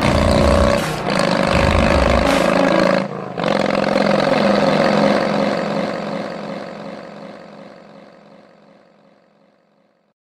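Closing music: a loud, dense passage breaks off briefly about three seconds in, then a final held chord fades out to silence.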